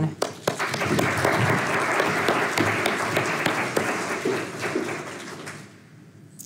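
Audience applauding, with many hands clapping at once. It builds just after the start, holds steady, then dies away over the last couple of seconds.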